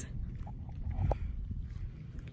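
A few faint hoofbeats of an American Quarter Horse gelding on dry, grassy ground, the clearest about a second in, over a low steady rumble.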